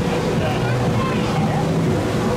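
Wind buffeting the microphone on the open deck of a moving cruise ship, with people's voices in the background.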